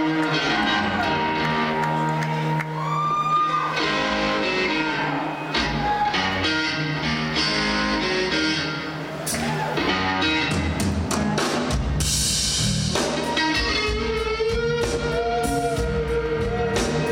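Live electric blues band: electric guitar playing lead lines over bass and drums, with a string bend rising about three seconds in and a long held note near the end.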